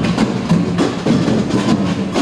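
Samba percussion band (batucada) playing drums and other percussion in a steady, driving rhythm of sharp strikes.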